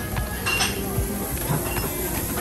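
Metal serving utensils and plates clinking against steel chafing dishes at a buffet grill counter: several light, ringing clinks over a background murmur of voices.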